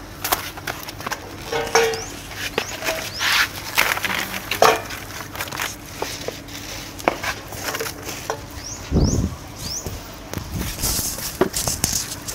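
Woven bamboo baskets and bunches of yard-long beans being handled, lifted and set down: scattered rustles, knocks and clatters, with a heavy low thump about nine seconds in.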